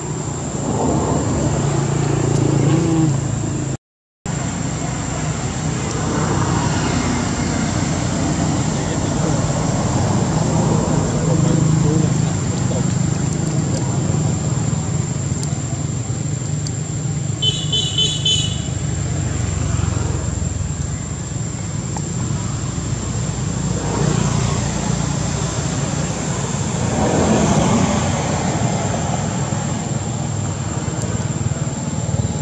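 Steady low outdoor rumble, like distant road traffic, with a thin high whine running under it. The sound cuts out for a moment about four seconds in, and a short, high, rapidly pulsed chirp comes a little past halfway.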